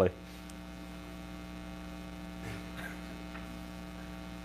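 Steady electrical mains hum: a low, even buzz made of several fixed tones stacked one above another, with faint room noise and a few slight stirrings near the middle.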